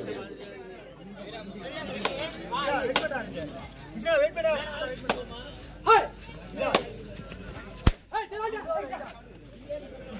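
Players and spectators at an outdoor kabaddi match calling and chattering, broken by about six sharp slaps spread through it.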